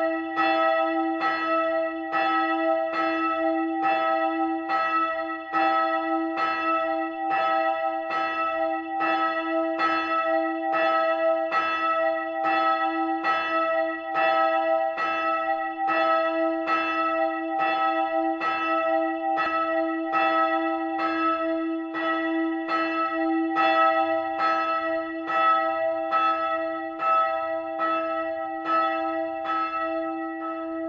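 A bronze church bell swinging in its tower, its clapper striking in an even rhythm, a little more than one stroke a second, with a steady ring and hum that carries on between the strokes.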